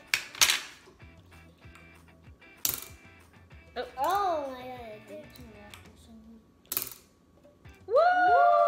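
Sharp clacks of a popsicle-stick catapult, a plastic spoon taped to a rubber-banded stack of craft sticks snapping forward as it is pressed down and let go. There are several separate clacks a few seconds apart.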